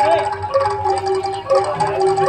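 Live Javanese jaranan campursari music: a held, gliding melody line over sustained ensemble tones, with scattered drum strokes.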